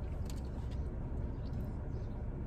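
Steady low hum in a parked car's cabin, with a few faint clicks as a thick milkshake is sucked up through a plastic straw.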